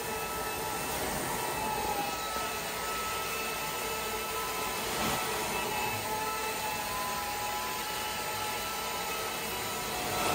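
Carpet steam-cleaning extractor's vacuum running steadily through a VANTOOL wand as it is drawn across wall-to-wall carpet, sucking up the water. It is a steady rushing noise with a few faint whistling tones in it.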